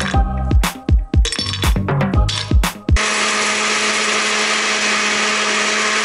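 Electronic dance music with a steady beat. About halfway through, it gives way to a glass-jug countertop blender running at one steady speed for about three seconds, blending a smoothie.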